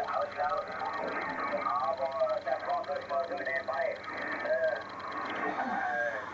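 A voice coming over an amateur radio receiver's loudspeaker, talking steadily, thin and narrow-sounding with no deep tones.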